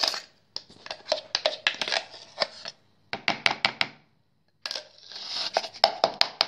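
A utensil scraping and knocking against a plastic container as freshly minced garlic is scooped out: quick runs of sharp clicks and scrapes in several bursts, with short pauses between.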